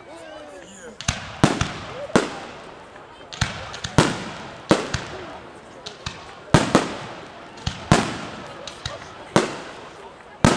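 Aerial fireworks bursting: a dozen or more sharp bangs at irregular intervals, starting about a second in, each with a fading echo.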